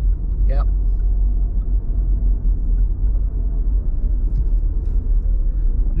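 Steady low rumble of a car's engine and tyres heard from inside the cabin while driving at town speed.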